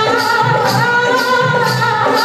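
Teej dance song: singing over a steady drum beat of about two beats a second, with jingling percussion.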